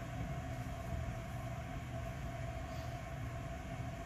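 A steady low background hum with a faint constant tone, unchanging throughout, with no distinct handling sounds.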